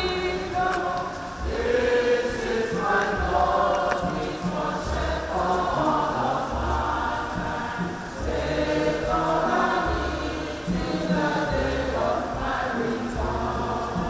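Church choir singing a Communion hymn, over a low beat that repeats about once a second.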